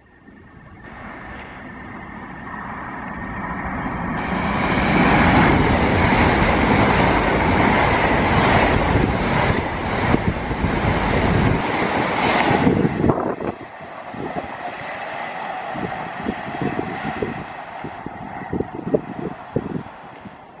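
LNER Azuma (Hitachi Class 800 bi-mode) high-speed train running on its diesel engines, approaching and passing close by. Its sound builds over the first few seconds to a loud rush of wheels and engines, then drops suddenly about two-thirds of the way through to a quieter steady sound with scattered clicks.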